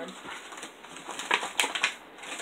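Clear plastic blister packaging crinkling and crackling as hands pull a jumbo Pokémon card out of it, with a few sharp crackles in the second half.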